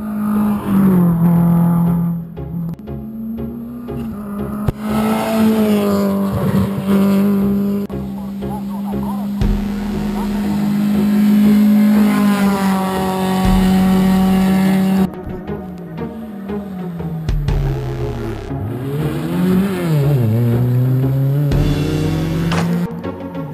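Rally car engine held at high revs. In the last seconds its pitch dips and rises several times as the car slows for a tight bend and pulls away again.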